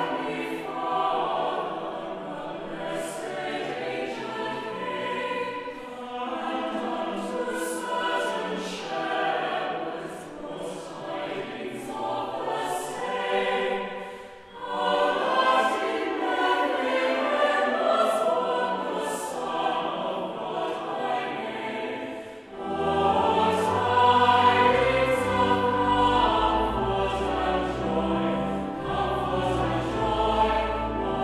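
Mixed chapel choir singing a carol in long phrases, with short breaks between them. About two-thirds of the way through, deep sustained bass notes join, consistent with organ pedal accompaniment.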